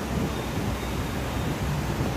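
Steady rushing noise with a low rumble: air buffeting the phone's microphone.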